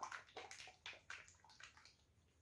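Faint run of soft clicks and liquid sloshes that fade away: a plastic squeeze bottle of acrylic pouring paint being handled.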